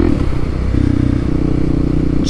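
A motor vehicle engine running steadily, its pitch wavering and dropping briefly near the start, then settling back to an even note.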